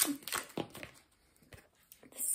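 Tarot cards being handled: a few soft card rustles and taps in the first second, then quiet.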